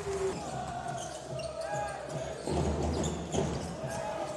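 Crowd noise in a basketball arena just after a made three-pointer, with a basketball bouncing on the hardwood court.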